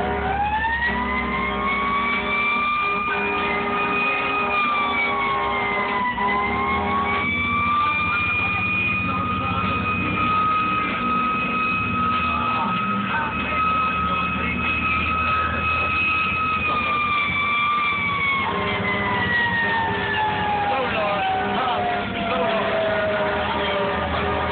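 A siren wail that winds up to a high held pitch, dips once and climbs back, then winds slowly down over the last several seconds. A steady low drone runs underneath.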